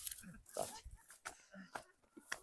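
Footsteps through dry grass on a narrow path, with irregular crackling and rustling of stalks and a few short low sounds in between.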